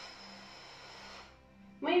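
A woman's long breath out through the mouth, a soft hiss that fades away a little over a second in, over faint background music.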